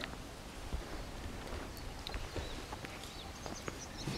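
Faint, irregular footsteps of someone walking, with a couple of faint high bird chirps.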